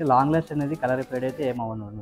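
Speech: a man talking over a steady low hum.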